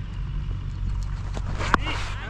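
A cricket bat striking a leather ball once, a single sharp crack near the end, over a steady low rumble of wind on the microphone.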